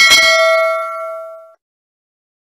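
Notification-bell sound effect: a single bright ding, struck once, ringing with several clear tones and dying away about a second and a half in.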